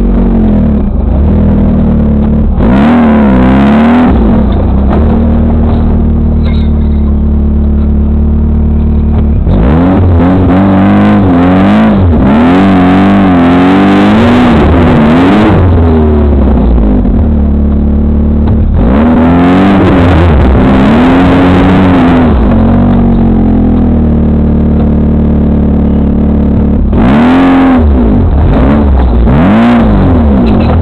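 VW-powered off-road buggy engine, heard from on board, running at a low steady idle and revving up and down in four spells. The longest spell lasts about six seconds, and the revs climb and fall several times in each one as the buggy works along a rough trail.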